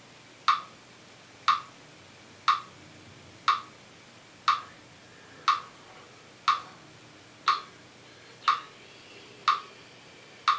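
Metronome ticking at 60 beats per minute: ten sharp, even clicks, one each second.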